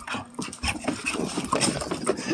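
Dogs scuffling in rough play on a carpeted floor, with a run of quick, irregular thumps and shuffling steps.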